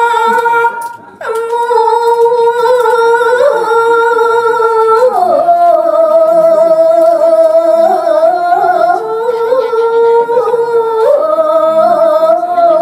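A woman singing a Balinese geguritan verse solo: long held notes with wavering ornaments, a short breath about a second in, and the melody stepping up to a higher note about five seconds in, back down around nine seconds, and up again near the end.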